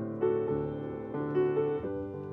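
Gentle piano music: single notes and chords struck every half second or so and left to ring.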